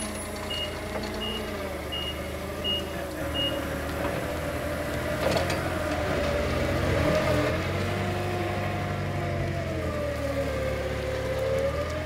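Nissan propane forklift running, its engine speed rising and falling as it manoeuvres with a load, while its reversing alarm beeps about once every 0.7 s for the first three and a half seconds, then stops.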